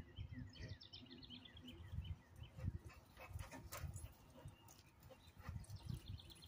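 Faint outdoor sound. A songbird sings a quick descending trill about half a second in, over irregular low rumbles and a few faint clicks.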